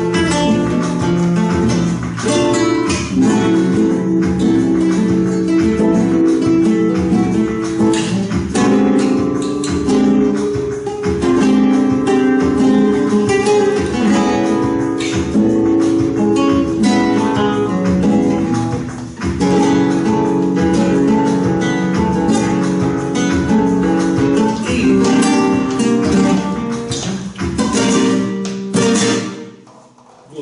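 Two flamenco guitars playing a tangos together, strummed chords mixed with plucked lines in a driving rhythm. The playing stops just before the end.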